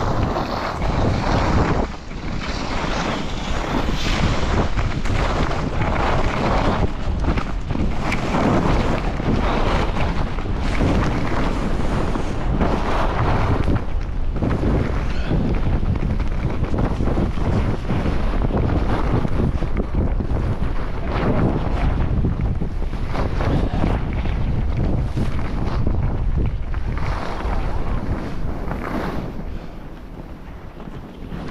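Wind rushing over a body-worn action camera's microphone while skiing downhill, mixed with skis scraping and hissing over packed snow. It stays loud and steady and eases off near the end as the skier slows.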